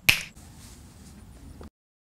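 A single sharp finger snap at the very start, followed by faint outdoor background noise that cuts off abruptly into dead silence near the end.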